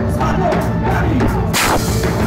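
Live band playing loud folk-punk music with a large bass drum and double bass, and a loud crash about one and a half seconds in that rings off briefly.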